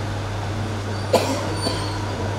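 Steady low hum of a hall's sound system, with a sharp knock about a second in and a fainter one half a second later.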